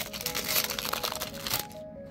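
Foil booster pack wrapper crinkling and crackling as it is torn open, with the crackling stopping about a second and a half in. Background music plays throughout.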